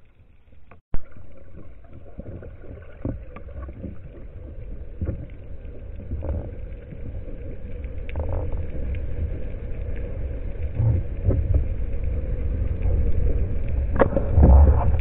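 Underwater sound picked up through a waterproof camera housing: a low rumble of water moving past the housing as the diver swims, growing louder toward the end, with one sharp click about a second in and scattered small clicks.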